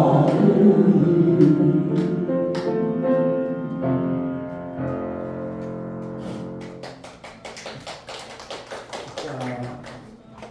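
Voices singing together with piano accompaniment at the close of a song, the last notes held and fading out over several seconds. A run of light clicks and taps follows in the last few seconds.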